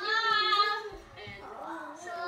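A young child singing a wordless tune: one long held note in the first second, then softer, quieter singing.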